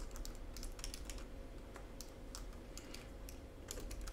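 Computer keyboard typing: a faint, irregular run of keystrokes.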